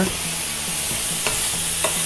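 Onions, green peppers and garlic sizzling in olive oil in a stainless steel pan as they are stirred, with a couple of faint clicks of the utensil against the pan.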